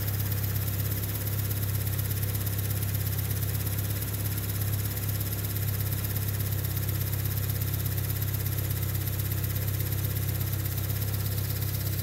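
Fiat Palio 1.2i four-cylinder petrol engine (code 178B5000) idling steadily with a low, even hum.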